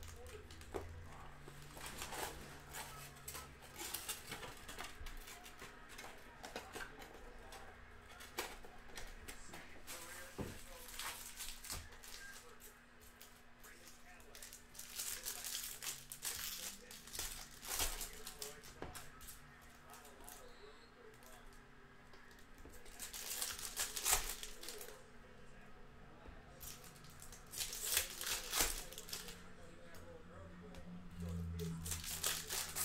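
Foil wrappers of Topps Chrome baseball card packs being torn open and crinkled by hand, with cards handled between. It comes in several bursts, loudest in the second half.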